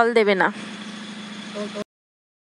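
A woman speaks briefly at the start, then a steady low hum with an even hiss runs on until the sound cuts off abruptly near the end.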